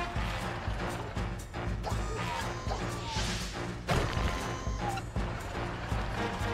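Cartoon sound effects of a small loader dumping dirt into a giant dump truck's bed over background music: mechanical clanks and knocks, a rushing noise about three seconds in, then a loud hit just before four seconds.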